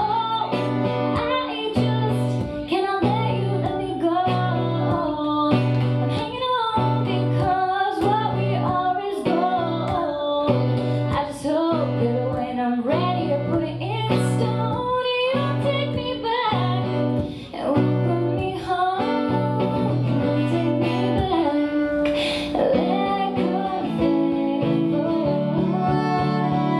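A woman singing to a strummed acoustic guitar, with a cello holding long, steady low notes underneath.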